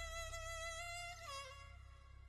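Background score: a slow solo violin line, holding one long note, then sliding down a step and fading away.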